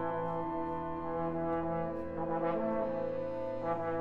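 Recorded wind-orchestra music: brass holding sustained chords with a trombone prominent, the harmony shifting about two seconds in and again near the end.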